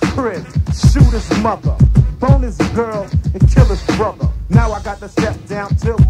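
Hip-hop track playing from a cassette tape rip: rapped vocals running continuously over a beat with a deep bass.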